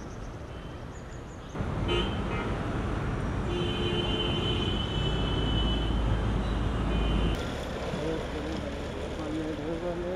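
Road traffic running, with a vehicle horn held for about three and a half seconds in the middle.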